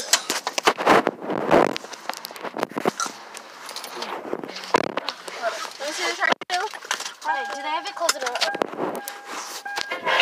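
Handling knocks, clicks and rustling as someone climbs into a car with a phone in hand, with low voices. In the last few seconds, music with sung vocals starts up.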